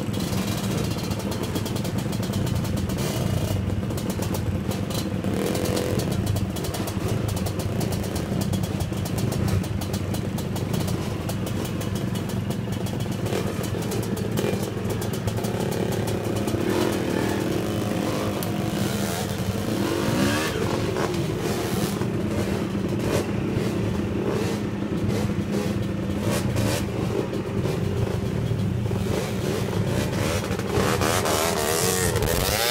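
Several dirt bike engines running and being revved, the pitch rising and falling as the throttles are worked.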